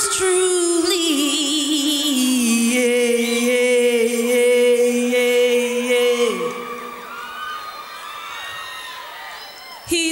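A female singer holds a long, steady note in a gospel song over a sustained backing. The note falls away about six seconds in, and fainter audience cheers and whoops follow.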